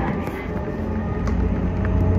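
Running noise heard inside a moving electric train: a steady rumble of the wheels on the rails, with a low steady hum that comes in about halfway through.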